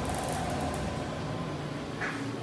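Schindler hydraulic elevator car travelling down, heard from inside the cab as a steady low rumble and hum. The rumble drops away at the end as the car comes to a stop at the floor.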